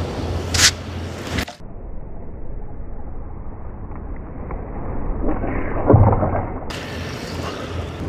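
Surf-casting rod swung overhead in a cast, with a brief sharp swish about half a second in, over steady wind rumble on the microphone; a louder rushing swell comes around six seconds in.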